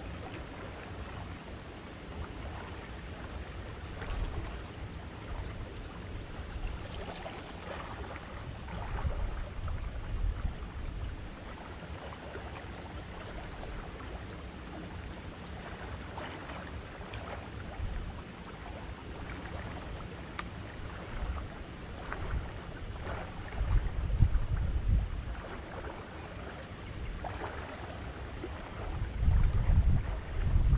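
Wind buffeting the microphone in uneven gusts, a low rumble that swells strongest about two-thirds of the way through and again near the end, with faint light rustling over it.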